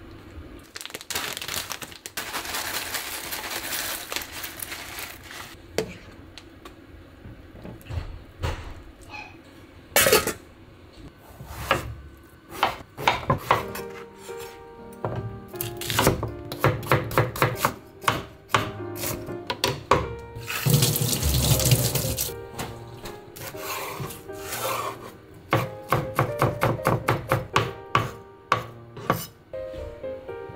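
A kitchen knife chopping on a bamboo cutting board in quick runs of cuts, about three or four a second, with water running from a kitchen tap in between. Soft background music plays throughout.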